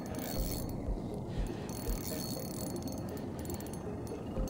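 Fishing reel being cranked steadily, its gears whirring and clicking, as a hooked walleye is reeled in under load.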